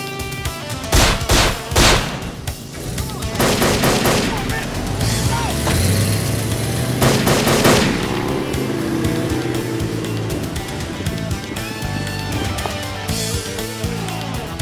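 Gunfire over dramatic background music: two loud shots about a second apart near the start, then longer rapid volleys of shots around four seconds in and again near the middle.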